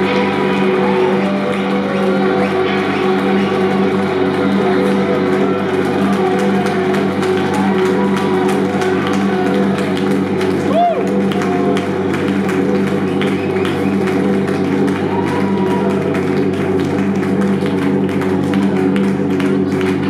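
Electric guitar feedback and effects-pedal noise from the amplifiers, held as a loud, steady drone with a few short pitch swoops and faint clicks.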